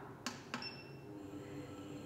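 Two soft clicks of a button being pressed on a shaker incubator's control keypad, followed by a faint high-pitched electronic tone as the display wakes up.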